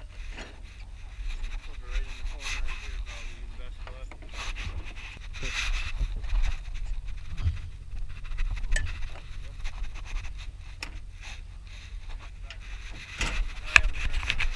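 Rustling and rubbing of a jacket against a body-worn camera's microphone, with scattered knocks and clatters of handling and a steady low wind rumble underneath. The loudest clicks come near the end.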